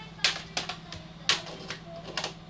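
Plastic toy pump-action shotgun clicking: two groups of sharp clicks, a loud click about a quarter second in and another just past the middle, each followed by a couple of softer ones, over a steady low hum.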